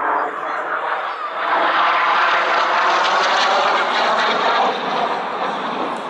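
Aero L-39 Albatros jet trainer flying past with its single turbofan engine running. The jet noise swells about a second and a half in, holds loud for about three seconds, then eases off near the end.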